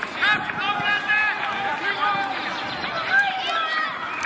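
Many high-pitched children's voices shouting and calling over one another without a break, as young players shout on a football pitch during a match.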